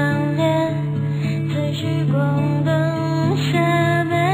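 A song with strummed acoustic guitar accompaniment and a woman singing the melody.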